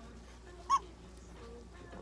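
A single short, high squeak from a prairie dog, about three-quarters of a second in, while it is held down for treatment of a mouth abscess.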